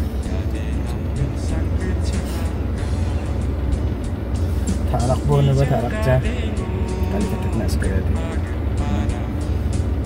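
Steady low rumble inside a car's cabin, with music playing. A man's voice is heard briefly about halfway through.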